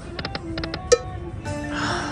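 Buffalo Link slot machine's electronic game sounds as the reels spin and stop: a quick run of short clicks, a sharper click about a second in, then louder held chime tones near the end.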